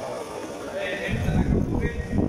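Air-conditioning airflow buffeting the phone's microphone, a rough low rumble that starts about a second in.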